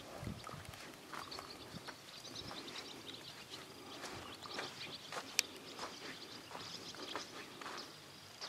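A stallion's hooves stepping on a sand arena at a walk, a run of soft crunching footfalls, with one sharp click about five and a half seconds in.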